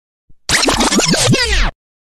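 An editing sound effect: a scratchy, glitchy burst of quick falling swoops, starting about half a second in and lasting just over a second before it cuts off abruptly.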